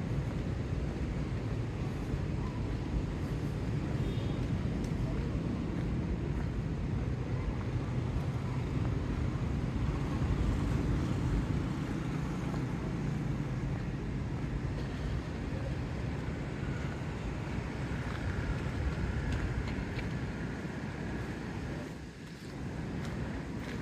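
Steady low outdoor rumble of wind on the microphone mixed with distant traffic.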